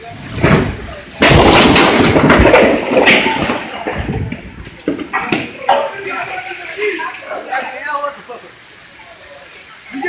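Storm wind and rain: a loud rush of noise starting about a second in and lasting about two seconds, then easing off.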